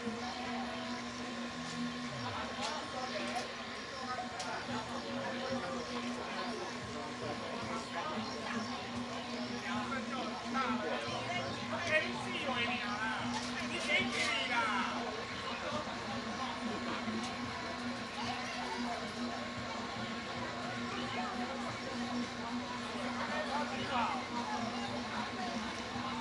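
Faint background voices of people talking, over a steady low electrical hum, with no music playing.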